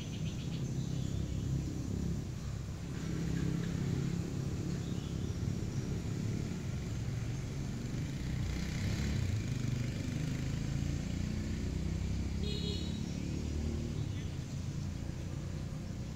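Steady low rumble of distant road traffic, with a brief high chirp about twelve seconds in.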